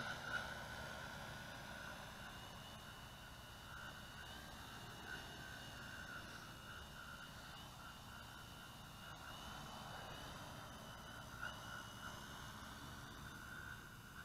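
Large quadcopter with RCTimer 5010 360kv motors and 17-inch propellers in flight: a faint, steady whine that wavers slightly in pitch as it is steered, over a low rumble of wind on the microphone.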